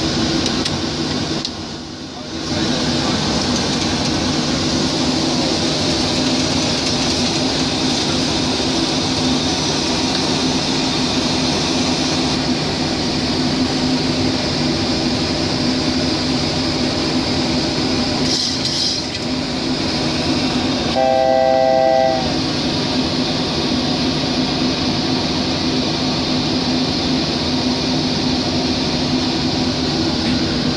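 Steady rush of airflow and hum of systems inside a Boeing 737 cockpit in flight. About two-thirds of the way through, a short electronic cockpit tone sounds for about a second.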